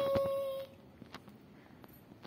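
A voice holding one steady hummed note that stops about half a second in, with a couple of light clicks near the start, then quiet with only faint ticks.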